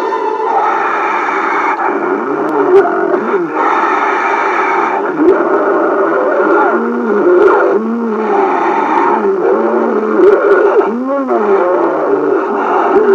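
Spooky soundtrack of wavering, moaning tones that rise and fall in short arcs over a dense, steady background.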